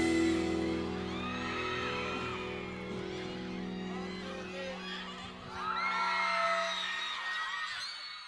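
The last sustained notes of a live pop ballad ring out and fade, with a crowd of fans screaming and cheering in high voices over them. The cheering swells again about six seconds in.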